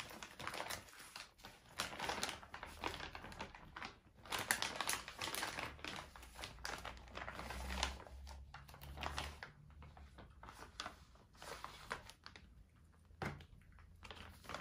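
Plastic ration packaging crinkling and rustling in irregular crackles as it is handled and a foil pouch is pulled out of a plastic bag.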